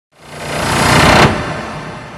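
Logo intro sound effect: a whoosh of noise that swells up over about a second, cuts off sharply just past a second in, and leaves a fading low rumble.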